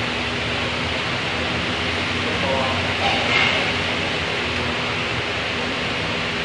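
Steady, noisy restaurant room ambience, a constant hiss with a low hum underneath, with faint background voices about halfway through.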